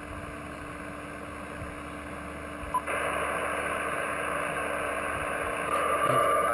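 Shortwave receiver static on the 8992 kHz military HF channel between voice calls: a steady hiss with a faint low hum. About three seconds in, a click and the hiss jumps louder, as when another station keys up its carrier.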